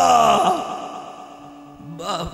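A man's voice at a microphone drawing out one long sigh-like vocal sound that slides down in pitch and fades away over about a second and a half.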